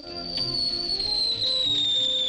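Cartoon falling-object whistle: a single high tone sliding slowly downward as the rock drops, over orchestral background music.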